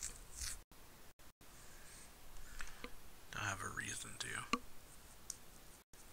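Quiet, soft-spoken Japanese dialogue from the anime episode: a character speaking, clearest from about three to four and a half seconds in. The sound drops briefly to dead silence several times.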